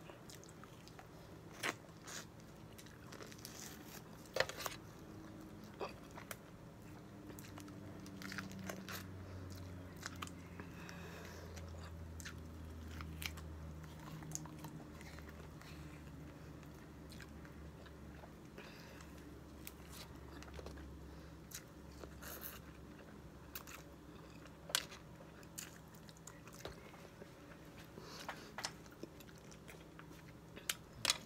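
A person chewing and biting lemon and lime wedges, rind and all, close to the microphone: quiet wet chewing broken by short sharp smacks and clicks every few seconds.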